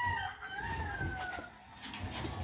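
A rooster crowing once, a single call of about a second and a half.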